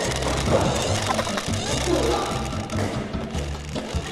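Background music with a steady stepping bass line, with faint voices underneath.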